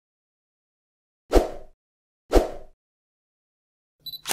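Two sharp hit sound effects about a second apart, each a sudden blow with a short fading tail.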